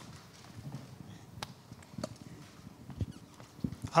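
Faint scattered knocks and clicks, with a few louder thumps near the end: handling noise of a handheld microphone as it is passed to an audience member.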